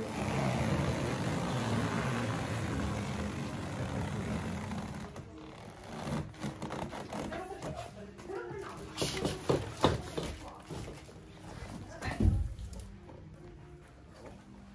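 Loaded hand truck rolling across the floor with a heavy boxed power amplifier, a steady rumble for the first few seconds. Then come scattered knocks and bumps as the box is moved and handled, with a deep thud about twelve seconds in as it is set down.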